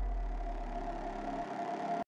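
The deep rumbling tail of a cinematic boom from the closing title sting, fading away under a faint steady drone, then cutting off abruptly at the end.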